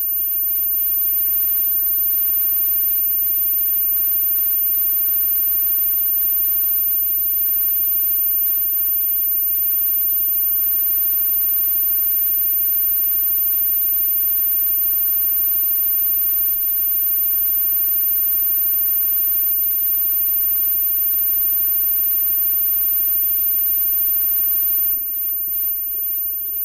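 Live band playing loudly on stage, recorded as a dense, distorted wash of sound with a steady low hum underneath; the level drops about a second before the end.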